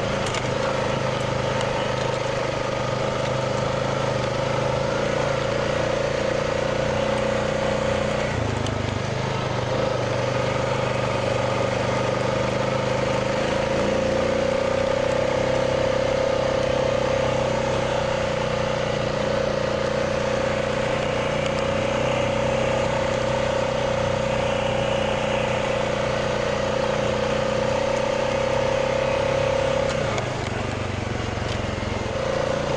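Honda Rubicon 520 ATV running at a steady riding speed, its engine holding a steady pitch with a high drone on top. The note briefly drops and shifts about eight seconds in.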